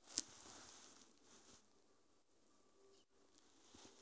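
Near silence, with a brief click just after the start and a few faint ticks near the end from fabric and pins being handled as the corset edge is pinned down.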